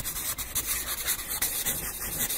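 A scratchy rubbing noise, like sandpaper or a brush, used as an intro sound effect; it pulses unevenly several times a second.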